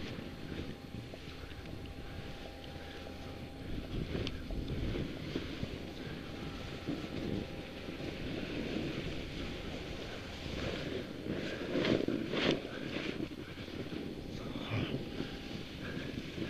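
Wind rushing over the microphone and skis hissing through powder snow on a downhill run, with a few louder swishes about twelve seconds in.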